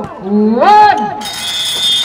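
A man's voice calling out, then from about a second in a single long, steady, high-pitched whistle blast, most likely a referee's whistle.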